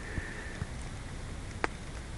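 Quiet outdoor lakeside background noise with a steady low rumble. A faint high thin tone sounds near the start, and a single sharp click comes about a second and a half in.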